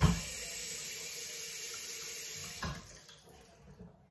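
Matte black stainless steel glass rinser spraying jets of water up into a mug pressed down onto it: a knock as the mug goes down, then a steady hiss of spray for about two and a half seconds, ending with another knock as the spray stops.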